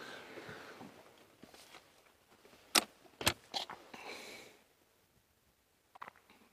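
Camera shutter clicking three times in quick succession, about half a second apart, a little before the middle, with a faint short rustle just after.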